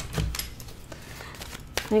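Deck of oracle cards being shuffled by hand: a few soft taps and flicks of card against card.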